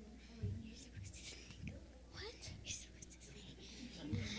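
Faint whispering and hushed voices of children on stage, over a low steady hum.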